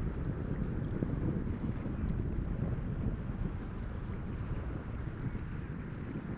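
Steady low rumble of a Delta IV Heavy rocket in powered ascent, heard through an onboard microphone, with all three first-stage boosters of RS-68A engines still firing.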